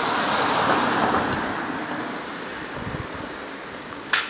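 A vehicle passing on the road: a rushing noise that swells to a peak about a second in and then slowly fades away.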